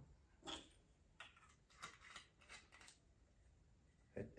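Near silence in a small room, with a few faint soft clicks and rustles, about six of them spread through the few seconds: light handling of glassware and a bottle.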